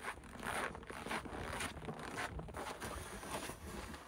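Snow pusher with a wide plastic blade scraping and shoving through snow in a run of short, irregular strokes.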